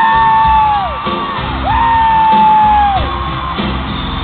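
Two long, high whoops, each sliding up, held for about a second and falling away, the second starting about halfway through. They are the loudest sound, over live band music in a large hall.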